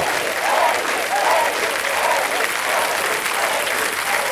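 Studio audience clapping steadily, with scattered cheering voices over the applause.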